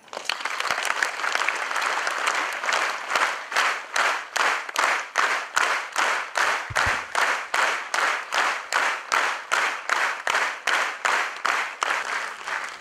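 An audience applauding. It breaks out suddenly, then settles into steady rhythmic clapping in unison at about three claps a second.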